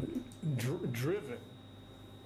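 A man's low voice wavering up and down in pitch for about a second, then fading to quiet.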